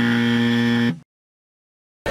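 A loud, steady buzzing tone lasting about a second, which cuts off suddenly into dead silence.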